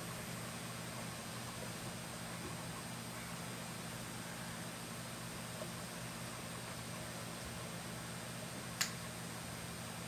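Faint steady hum and hiss of room tone while a UV curing light is held on the glued fly. A single sharp click near the end as the UV light is switched off.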